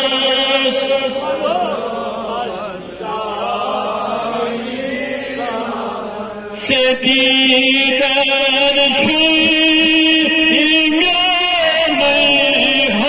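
A man chanting a Kashmiri naat, a devotional poem, through a microphone, drawing out long wavering notes. The chant is softer through the middle and louder again from about seven seconds in.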